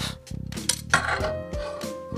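Background music, with a few light metallic clinks about halfway through as the aluminium panel is handled in a metal vise.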